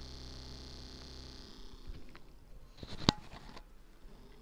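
Small DC motor running off a homemade lead-acid cell to discharge it, a steady high whine over a low hum that fades out about a second and a half in. Handling clicks follow, with one sharp knock about three seconds in.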